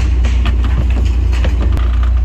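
Steady low rumble of wind buffeting the microphone and road noise from a moving small pickup, heard from its open cargo bed, with scattered light knocks and rattles throughout.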